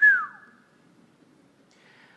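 A single short, high-pitched squeak that slides down in pitch, with a faint tone at the starting pitch lingering for about a second and a half.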